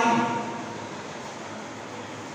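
The end of a man's spoken word right at the start, then a steady, even room noise with no distinct event.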